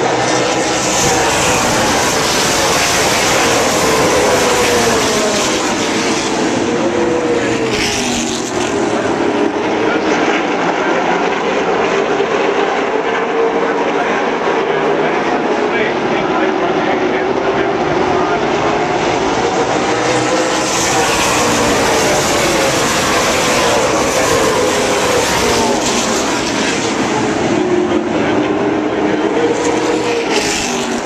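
A field of PASS South super late model stock cars racing in a pack, many V8 engines running hard together, loud and continuous. The combined engine pitch rises and falls in long waves as the pack comes past and goes through the turns.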